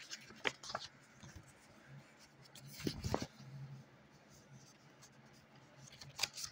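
Paper calendar pages being handled and turned by hand: faint rustles and a few soft clicks, the loudest cluster about three seconds in.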